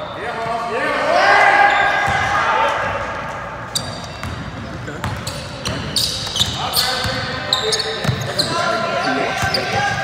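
Sounds of an indoor basketball game on a hardwood court: players and onlookers shouting, loudest about a second in and again in the second half, over sneakers squeaking and the ball bouncing.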